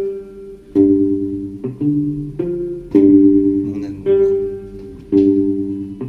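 Slow plucked guitar ballad: notes and chords picked about once a second, each left to ring and fade.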